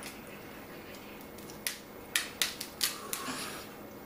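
Crab leg shells cracking as they are snapped apart by hand: about five sharp cracks in quick succession around the middle, then a short crunchy rustle.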